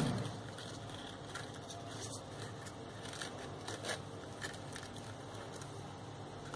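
Faint, scattered crackling and rustling of crepe paper as a glued petal is pressed onto a paper flower by hand, over a low steady hum.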